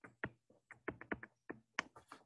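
A stylus tapping and clicking on a tablet's writing surface while an equation is handwritten: about ten short, faint clicks at uneven intervals.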